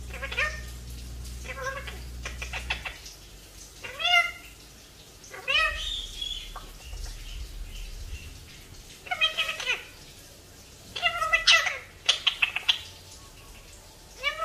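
White Indian ringneck parakeet making a series of short, high-pitched calls that bend up and down in pitch, repeated every second or two, with a quick run of calls about eleven seconds in. A low background hum stops about three seconds in.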